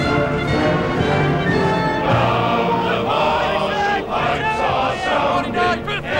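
Music: sustained chords held for about two seconds, then a choir of voices singing.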